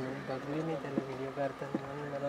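A steady low buzzing hum, shifting slightly in pitch about half a second in, with faint voices behind it.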